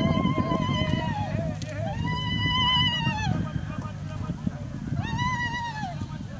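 High-pitched trilling ululation: a held, wavering call that falls away about a second in, then two shorter calls that rise and fall, around two and five seconds in, over low background noise.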